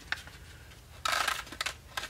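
Small seeds rattling in a small container as it is picked up and tipped into a hand: a short rattling burst about a second in, then a few light clicks.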